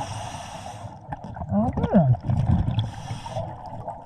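Scuba diver breathing through a regulator underwater. There are two hissing inhalations, one at the start and one about three seconds in, with a low bubbling exhalation between them.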